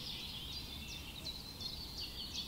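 A chorus of small birds chirping, many short, quick, high chirps overlapping one another, over a steady low background noise.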